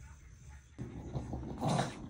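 A dog gives a short whimpering grumble about a second and a half in, over light knocking from the plastic puzzle feeder it is nosing at.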